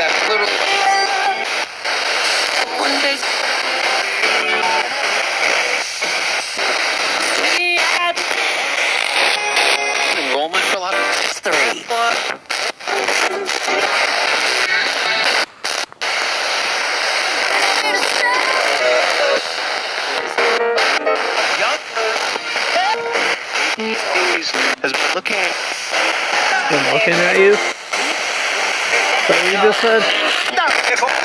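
Spirit box radio scanner sweeping through stations: constant hiss and static, broken up by split-second snatches of broadcast voices and music, with sharp cuts between them and a couple of brief dropouts.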